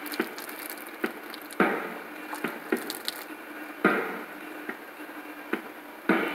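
Scattered sharp knocks or taps, about eight of them spread unevenly, several with a brief ringing tail, over a faint steady background.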